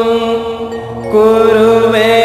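Slow sung Hindu mantra chant with music: one long held note dies away, and the next held note begins about a second in.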